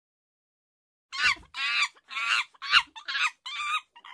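Hen clucking and squawking, likely a comic sound effect laid over the picture: a run of about seven short, wavering calls that starts about a second in, with dead silence before it.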